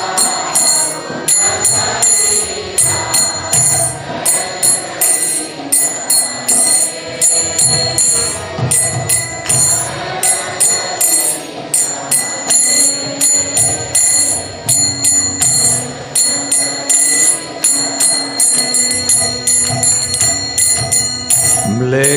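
Small brass hand cymbals (kartals) struck in a steady rhythm, about two strikes a second, ringing over accompanying devotional instrumental music between sung verses.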